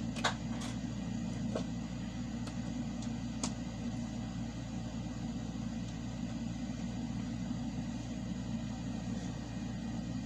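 A steady low machine hum with a few faint clicks in the first few seconds.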